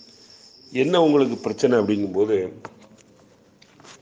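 A man's voice speaking for about two seconds, starting about a second in. Before he speaks, a thin, steady, high whine is heard, which stops as the voice begins.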